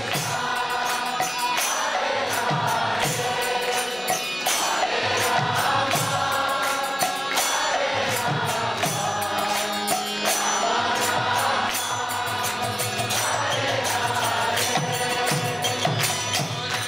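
Kirtan: a lead voice and a group of voices chanting a devotional mantra in repeated phrases a few seconds long. Underneath are a harmonium's held chords and a steady beat of jingling hand percussion.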